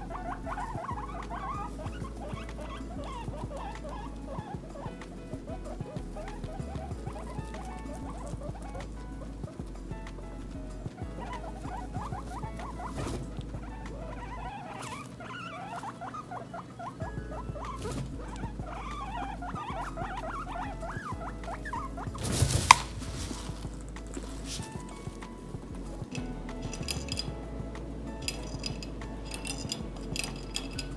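Guinea pigs rustling and munching in a pile of loose hay. There is one sharp knock about twenty-two seconds in.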